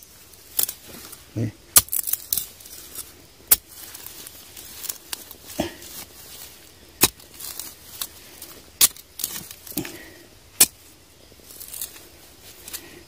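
Sharp, irregular knocks and scrapes of a machete blade against stone and soil, about eight spread unevenly, as a half-buried rock is worked loose.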